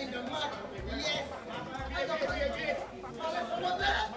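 Several people's voices talking over one another in a street scuffle, with short low thuds recurring underneath.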